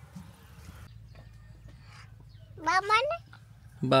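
A cat gives a single short meow that rises in pitch about two and a half seconds in, over a faint steady low hum.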